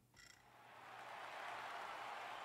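Faint, even noise from the closing scene of the music video, swelling up over about a second and then holding steady, after a brief faint sound just at the start.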